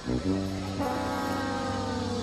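A man's long, drawn-out closed-mouth "hmm" of satisfaction after a sip of coffee, held for about two seconds, its pitch sliding slowly down.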